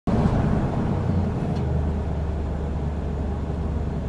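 Heavy truck engine running steadily with road noise: a constant low hum that starts suddenly and holds at an even level.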